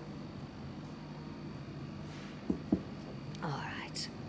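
A person sipping tea: quiet room hum, two soft low knocks about halfway through, then a brief breathy exhale near the end.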